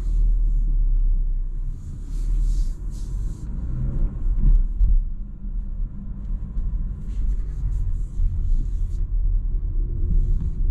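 Low rumble of a Renault Arkana's 1.3 TCe four-cylinder turbo petrol engine and its tyres, heard inside the cabin as the car drives slowly. Short hissing bursts come twice, about two seconds in and again about seven seconds in.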